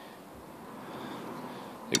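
Quiet, steady background hiss with no distinct sound events; a man's voice starts right at the end.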